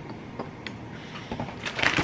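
A cloth rubbed over the camera and its microphone, a loud scratchy rustle in the last half second, after a few faint clicks of handling.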